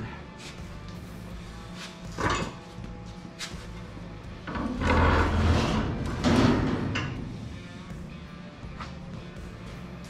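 A steel truck frame is pulled forward on small dollies, rolling and scraping, loudest for a couple of seconds in the middle. Background music plays throughout.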